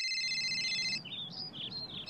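A telephone's electronic ringtone trilling, which cuts off about a second in. Birds chirp after it over a faint outdoor background.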